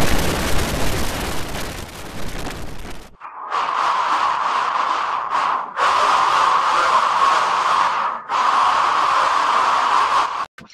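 Loud, harsh distorted noise. A full-range blast lasts about three seconds, then a rougher hiss sits in the middle of the range and cuts out briefly twice.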